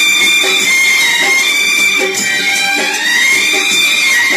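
Instrumental passage of a Kannada film song played for a dance: a high melody line held and gliding slowly up and down over a steady beat, with no singing.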